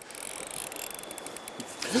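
Fly reel's clicker drag buzzing in a fast run of clicks as a hooked steelhead takes line, over the steady rush of the river.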